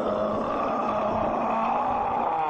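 A man's long drawn-out vocal cry held on one steady pitch.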